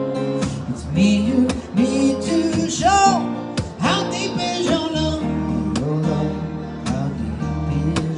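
Acoustic guitar strummed in chords, with a man singing a slow melody over it.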